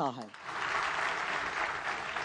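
Audience applauding. It starts just after a man's spoken line ends and thins out near the end.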